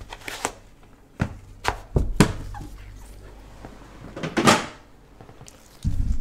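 Cardboard Panini National Treasures basketball card boxes handled by gloved hands: a series of knocks and thuds as boxes are lifted and set down. About four seconds in there is a brief sliding scrape, and a thud near the end.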